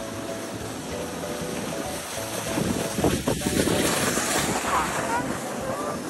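Plastic sled sliding down a snow slope: a steady rushing scrape that grows louder around the middle, with wind on the microphone.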